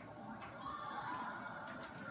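Faint voice and arena sound from a television broadcast, heard through the TV set's speaker.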